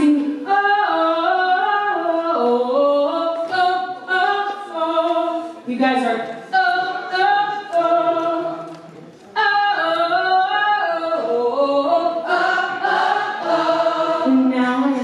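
A woman singing unaccompanied into a microphone, a vocal exercise of short melodic phrases that step up and down in pitch, with a brief pause about nine seconds in.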